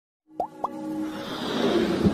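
Logo intro sound effects: two quick rising pops, then a music build-up that swells in loudness.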